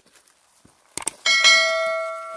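Subscribe-button sound effect: two mouse clicks about a second apart, then a notification bell chime that rings out and slowly fades.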